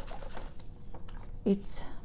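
Water sloshing and dripping in a plastic basin as orchid roots are swished through a purple potassium permanganate rinse.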